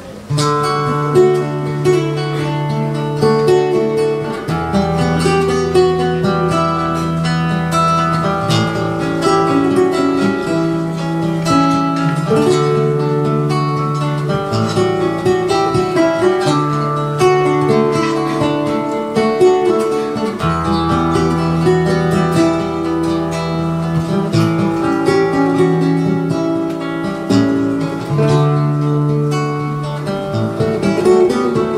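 Two acoustic guitars playing together: an instrumental introduction of picked melody over held bass notes, before the singing comes in.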